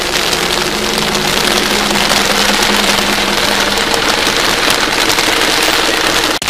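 An engine running steadily at idle, a constant hum, over a steady hiss of rain.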